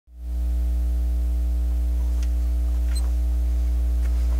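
Steady low electrical mains hum with a buzzy edge, holding unchanged, with a couple of faint ticks partway through.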